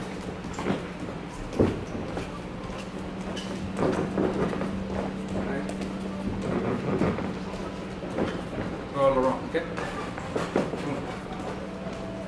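Feet skipping and shuffling sideways on a boxing ring's padded canvas: irregular soft thumps of landing steps, over a steady hum.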